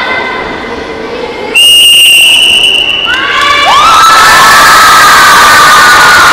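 A long, steady whistle blast about a second and a half in, then a crowd of children shouting and cheering loudly.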